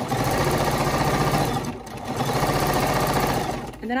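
Bernina 505 QE sewing machine stitching fast and evenly during free-motion quilting, run with its BSR stitch-regulator foot. The sound dips briefly just under two seconds in and stops shortly before the end.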